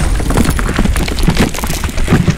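Loud, dense crackling noise over a low rumble, full of rapid clicks.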